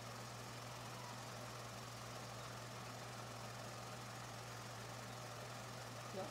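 Steady low hum with an even background hiss, unchanging throughout.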